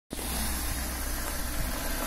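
BMW E36 3 Series engine idling steadily.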